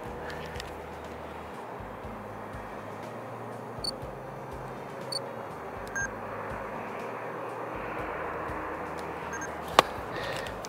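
Steady outdoor background noise, a quiet even hiss. A few brief faint high peeps and small clicks come through it, with one sharper click near the end.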